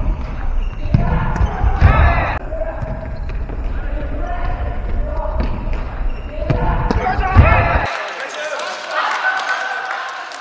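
Futsal being played in a reverberant sports hall: players shouting to each other over the thuds of a futsal ball kicked and bouncing on the wooden floor, with the loudest kick about seven seconds in. Just before eight seconds the hall sound cuts off abruptly and a thinner, higher sound takes over.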